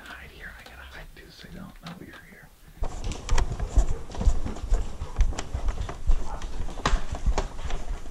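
Hushed whispering, then from about three seconds in, a run of close, loud thuds, knocks and rustles: footsteps on a wooden floor and a plastic Nerf blaster being handled right against a body-worn camera.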